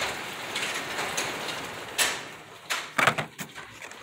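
Hand handling of carded toy-car packages, cardboard backing with plastic blisters, rustling as they are moved and set down on a table, with a sharp click about two seconds in and a few more clicks around three seconds.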